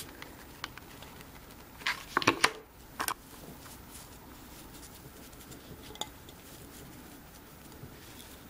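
Light handling noises: a few brief knocks and rustles, with a cluster about two seconds in and another a second later, as rope is pressed onto a glass vase.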